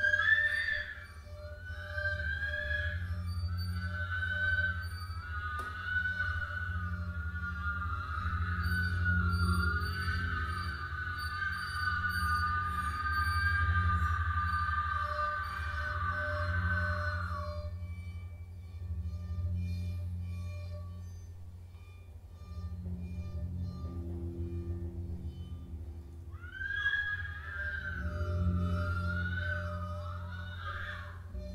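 A woman's voice singing a very high, wavering wordless tone in long held lines, breaking off a little past halfway and coming back near the end, over a steady low electronic drone.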